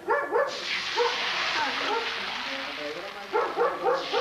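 Food frying in hot oil in a pan: a steady sizzle that starts suddenly about half a second in, with voices over it.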